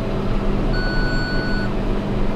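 A single electronic beep, held steady for about a second in the middle, over a steady hum of running machinery.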